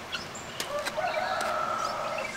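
A rooster crowing once, a held call of about a second in the second half, with small birds chirping faintly and a few sharp clicks just before it.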